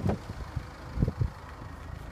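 A car's front door swung open, with a few dull knocks from the door and its handling over a low steady rumble.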